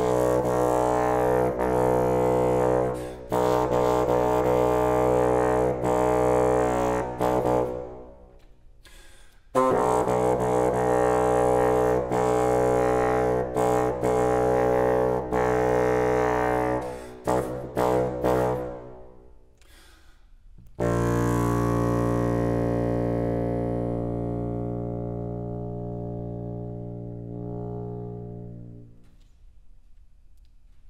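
Solo bassoon playing long sustained notes full of overtones, breaking off twice for a moment, then a long low held note that fades slowly away to nothing near the end.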